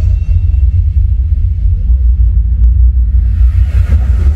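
Projection-mapping show soundtrack over loudspeakers, between musical phrases: a deep, steady bass rumble, with a whoosh that swells up near the end.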